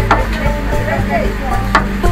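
Dough being kneaded by hand in a large steel bowl, with soft working and stirring sounds and a couple of sharp clicks against the metal, over a steady low hum.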